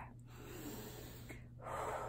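A woman taking a deep breath, soft at first and louder near the end.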